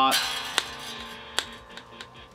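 A bright chord strummed once on a modified Charvel San Dimas electric guitar, ringing and slowly fading. Two sharp clicks come through the ringing, about half a second and a second and a half in.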